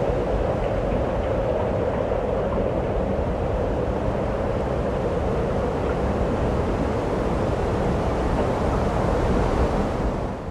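Steady wind rushing over the microphone, with a low rumble.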